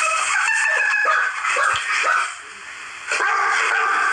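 Loud rooster-like crowing: one long call, then a short pause and a second call starting about three seconds in.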